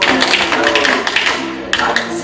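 Tap shoes striking the floor in a quick, dense run of taps, easing briefly near the end before a few more strikes, over recorded music.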